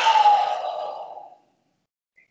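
A man's long breath out, a loud sighing exhale that starts strong and fades away over about a second and a half, as part of a controlled breathing exercise.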